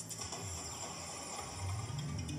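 Electronic sounds from a Merkur Lucky Pharaoh slot machine as the chosen win is taken into the bank: faint high tones over a steady low tone, with a new tune starting near the end.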